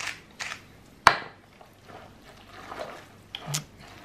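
A pepper mill grinding briefly at the start, then a single sharp knock about a second in, followed by soft sounds of tagliatelle with sauce being stirred with a wooden spoon in a saucepan.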